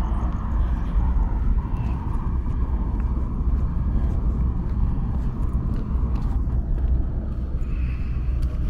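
Outdoor city ambience: a steady low rumble of distant traffic.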